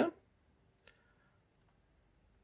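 Faint computer mouse clicks: one about a second in and another near the end.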